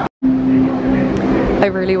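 A steady low droning hum of several held tones, after a split second of silence at the very start; a woman starts speaking near the end.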